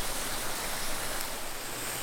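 Steady rush of a small waterfall cascading over rocks in a creek.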